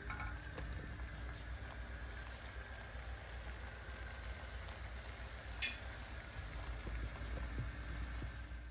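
Dry prawn curry sizzling softly in a hot pan, a faint steady hiss, with one short tick about five and a half seconds in.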